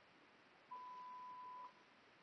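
A single electronic beep: one steady, pure high tone lasting about a second, starting just under a second in, over near silence.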